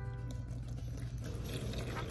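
A stream of milky gelatin mixture pouring from a glass jar into a plastic mold, a soft steady splashing that grows a little stronger after about a second. A held note of background music fades out at the start.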